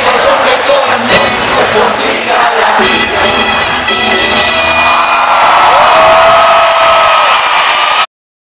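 A live rock band with drums, electric bass and guitar plays loudly through a concert PA, with the crowd cheering and whooping. The drum hits thin out about halfway, and long held notes ring on.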